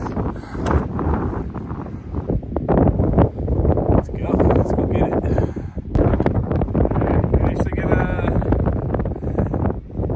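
Gusty wind buffeting the microphone on an exposed mountain summit, loud and uneven, with a brief higher pitched sound about eight seconds in.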